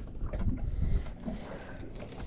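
Low, uneven rumble of wind on the microphone and water lapping against the hull of a fishing boat at rest on choppy water, with a few soft knocks.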